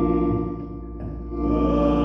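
Instrumental music of sustained chords played on a keyboard instrument. The chord thins out and dips about halfway through the first second, then a new chord enters about a second in and swells back up.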